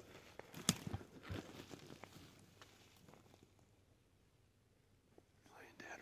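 Footsteps of hunters walking through dry grass and fallen branches on a forest floor, with a few sharp twig snaps in the first second and a half, then tapering off to quiet. A whispered voice starts near the end.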